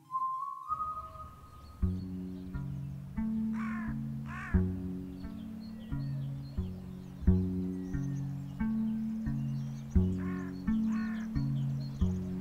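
Crows cawing over background music: two caws a few seconds in and two more near the end. The music is a repeating pattern of low notes.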